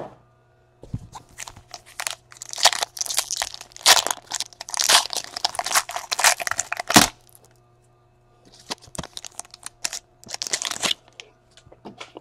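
Gold foil wrapper of a trading card pack being torn open and crinkled by hand: a dense run of sharp crackling tears, a short pause, then more crinkling.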